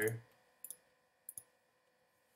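Two short, sharp clicks of a computer mouse about two-thirds of a second apart, picking an entry from a drop-down menu.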